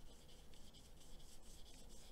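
Faint scratchy rubbing of a flat brush stroking acrylic paint across canvas.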